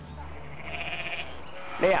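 A sheep bleats once, a short quavering call about half a second in.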